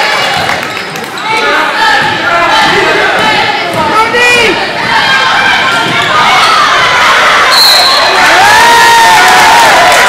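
Crowd noise and shouting in a school gym during live basketball play, with the ball bouncing on the hardwood court. A short, high, steady whistle sounds about three quarters of the way through.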